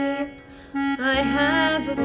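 A slow sung ballad with instrumental accompaniment. A held sung note ends just after the start, there is a short lull, and about a second in a sustained melody line with vibrato comes in over steady accompaniment chords.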